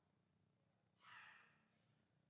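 Near silence, with one short, faint breathy puff, like a sigh, about a second in that fades within half a second.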